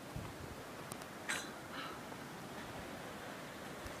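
Faint wind and rustling, with a brief rustle a little over a second in and a softer one shortly after.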